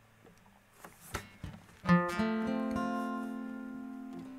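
Acoustic guitar: a few faint plucks and string clicks, then about two seconds in a chord is strummed and left ringing, fading slowly.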